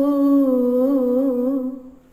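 A woman singing unaccompanied in a Malayalam folk style, holding one long note with a gentle vibrato that fades out near the end.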